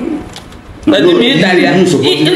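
A person's voice, loud and wavering in pitch, starting about a second in after a brief lull.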